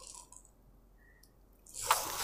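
A few faint clicks, then near the end a sudden rustle of saree fabric as it is lifted and folded.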